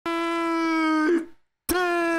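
A man's voice held on one long, steady yelled note that wobbles and breaks off about a second in. After a short silence, a second held note starts with a click near the end.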